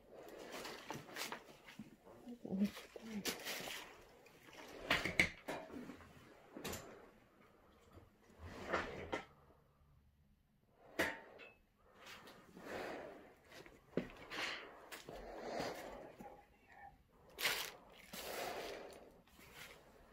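Footsteps and scattered knocks and rustles of someone moving through a debris-strewn room, with some quiet, indistinct speech.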